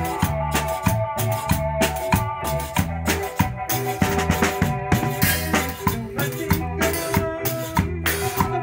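A live band rehearsing a cumbia: drum kit, bass and electric guitar playing a steady, evenly pulsed beat under held melody notes.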